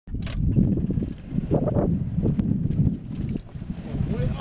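Golf cart driving over an uneven path: a low, uneven rumble and rattle with a couple of sharp knocks from bumps.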